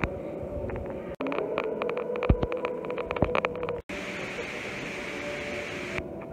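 Echoing church-interior background: indistinct noise of people moving about, with many small clicks and knocks. It breaks off abruptly twice, and from about two-thirds of the way in it turns into a steadier hiss.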